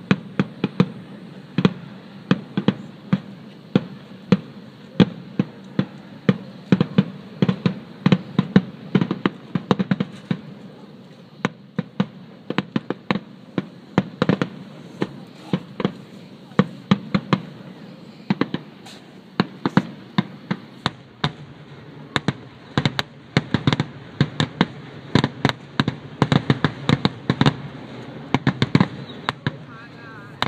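Aerial fireworks shells bursting in a rapid, irregular string of sharp bangs, several a second, with a continuous low rumble between them. The bangs grow denser in the second half, as in a display's finale.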